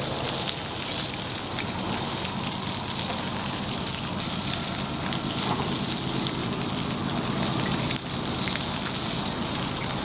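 Food frying in a pan over a wood campfire, sizzling steadily, with small crackles from the burning wood.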